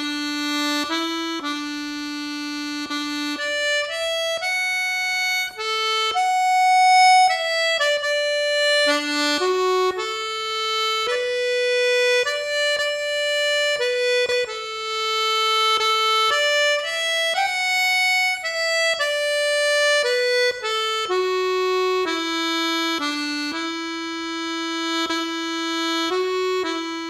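Serenellini button accordion playing a slow air: a slow melody of long held reedy notes that change every second or two.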